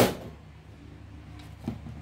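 A single sharp knock right at the start, like something set down or bumped, over a low steady hum.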